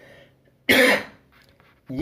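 A man coughs once, a short sharp throat-clearing cough about two-thirds of a second in.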